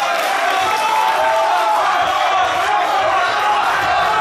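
A crowd of many voices calling out together, loud and continuous.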